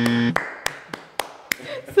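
A single person clapping hands, about five sharp claps over a second and a half, after a steady buzzer tone cuts off just before the first clap.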